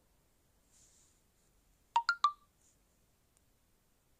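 Three short electronic beeps in quick succession, each at a different pitch.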